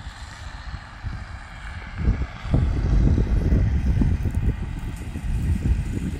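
Gusty wind buffeting the microphone: a low, uneven rumble that eases for the first couple of seconds, then picks up again about two and a half seconds in.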